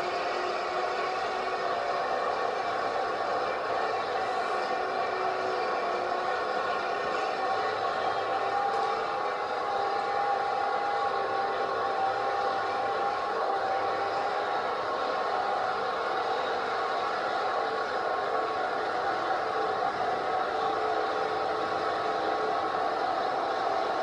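Bulldozer's diesel engine running in a steady drone, with several held tones and no rises or falls in pitch.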